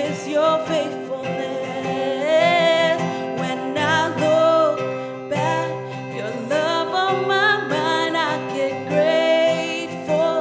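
A woman singing a worship song live, accompanied by strummed acoustic guitar.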